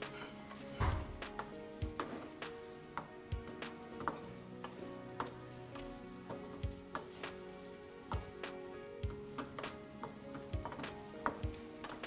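Chicken in a thick sauce sizzling in a frying pan while a spatula stirs it, knocking and scraping against the pan in irregular taps.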